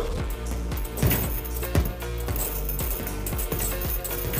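Gloved punches landing on a chain-hung Everlast heavy bag, a string of irregularly spaced hits with the chains clinking, over background music.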